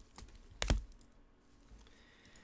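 Light clicks from trading cards being handled, with one sharp click a little under a second in.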